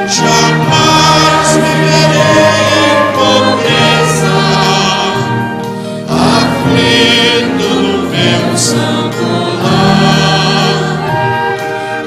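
Choir singing a Portuguese-language hymn with a string orchestra, in long held phrases of about six seconds each.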